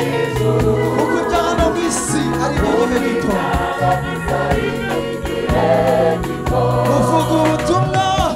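A gospel choir singing with a lead singer through a loudspeaker system, over a bass line and a steady beat.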